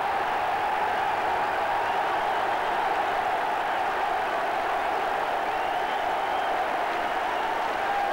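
Large football stadium crowd cheering steadily in celebration of a goal just scored.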